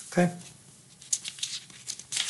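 A sheet of paper rustling and sliding under a hand as it is moved off the desk. A quick series of short crinkles starts about a second in.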